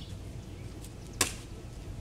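Plastic water bottle landing on an asphalt driveway after a flip: one sharp knock a little over a second in.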